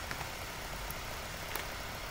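Steady low background hum and hiss in a pause between narration, with a faint mouse click about one and a half seconds in.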